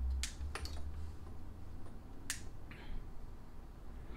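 Sharp clicks of a light switch as the room lights are switched off: two close together near the start and one more a little past halfway, over a low steady hum.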